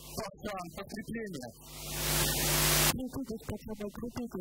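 Men talking into stage microphones, broken by a loud hissing noise that swells for about a second and a half and then cuts off abruptly, after which the talk resumes.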